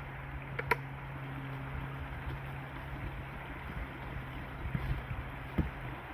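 A small engine idling with a low, steady hum that fades out shortly before the end. Two sharp clicks come just under a second in, and dull thuds of boots stepping onto the logs follow near the end.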